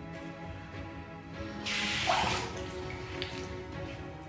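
Tap water running and splashing in a bathroom sink for under a second, about a second and a half in, as a face is rinsed after a shave. Quiet background music plays throughout.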